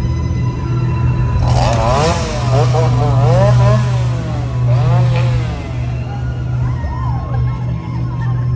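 A steady low engine-like drone with loud, wavering wails over it, the pitch bending up and down, strongest from about a second and a half to four seconds in and returning briefly twice after.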